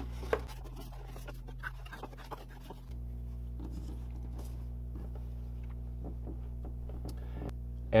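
Faint handling of cardstock: an envelope being folded and creased along its score lines, then light rustles and ticks as a paper panel is moved about. A steady low electrical hum runs underneath and is the most constant sound.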